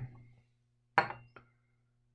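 A small container knocked or set down on the tabletop: one sharp clink with a brief ring about a second in, then a lighter click.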